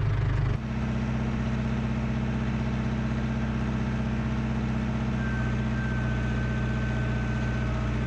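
Case IH 4230 tractor's diesel engine running steadily while it powers a hydraulic post driver that is struggling to lift its hammer. The engine sound changes abruptly about half a second in, and a faint high steady whine joins from about five seconds in.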